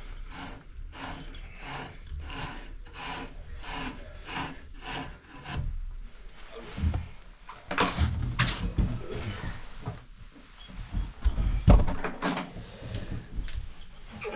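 Wire cleaning brush scrubbing in and out of the cartridge bore of a brass Moen shower valve body, a rasping stroke about three times a second, clearing out debris before a new 1225 cartridge goes in. After about five seconds the strokes stop, giving way to scattered knocks and scrapes, the loudest shortly before the end.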